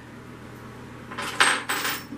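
Small metal tile drill bits clinking and rattling together as they are handled: a short cluster of clicks about a second in, with a faint metallic ring.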